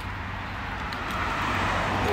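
A car passing on the street, its tyre and engine noise growing steadily louder.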